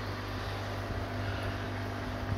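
Steady low electric hum of running aquarium pumps, the small submersible filter and air supply working in the fry tubs.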